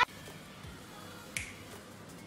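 A single sharp finger snap about a second and a half in, over faint music with a steady beat leaking from headphones played at high volume.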